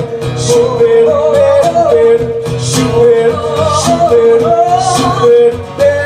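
Live acoustic duo music: an acoustic guitar strummed under singing, the voice holding long sustained notes.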